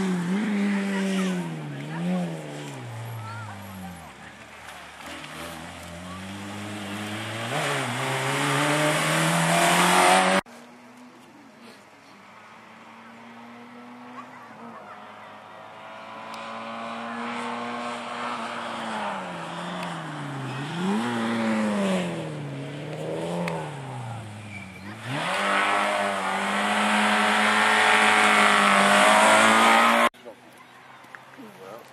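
Two small hatchback rally cars driving hard, one after the other, each engine revving up through the gears with short pitch drops at every shift. The first cuts off suddenly about a third of the way in; the second builds from quiet to its loudest near the end.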